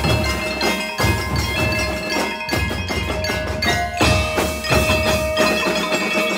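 Drum and lyre corps playing: a row of mallet keyboard instruments rings out a melody over steady bass and snare drum strokes.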